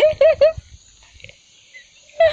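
A person's short burst of laughter, three quick pitched syllables, then only faint background.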